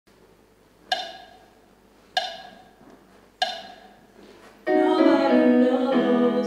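A keyboard strikes the same note three times, a little over a second apart, each ringing and fading, the usual way of giving singers their starting pitch. Near the end women's voices come in, singing together in harmony.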